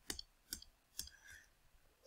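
A few faint clicks from a computer input device, such as a mouse or stylus, used to work a digital whiteboard. The clearest three come about half a second apart in the first second.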